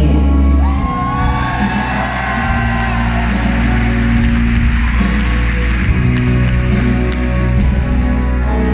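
Live orchestra and band playing an instrumental passage: strings and guitars holding sustained notes over a steady bass, without vocals.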